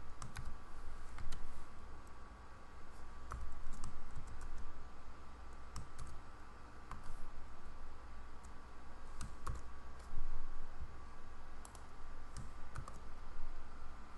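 Computer keyboard keys typed in short, irregular runs of clicks as a formula is entered, over a steady low hum and a faint steady high tone.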